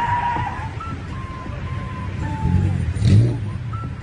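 Low engine and road rumble heard from inside a car in slow traffic, with a few faint drawn-out tones over it and a louder burst about three seconds in.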